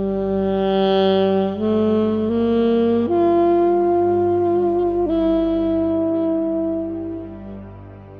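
A homemade 'Flatsax' (a soprano saxophone mouthpiece on a flat plywood-and-pine body, pitched in F like an alto sax) plays a slow improvised phrase. It holds a low note, steps up twice in short notes, then holds a long higher note that drops a little about five seconds in and fades near the end. A steady low drone sounds underneath.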